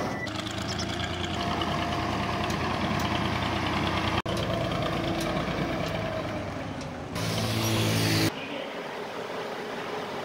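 Tractor's diesel engine running steadily at low revs. It rises briefly about seven seconds in, then drops to a quieter background near the end.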